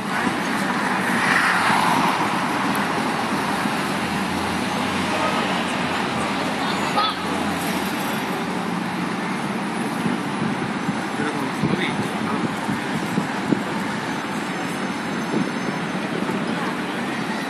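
Busy city street ambience: steady traffic noise with indistinct voices of people around. A vehicle's low engine hum rises for a few seconds midway.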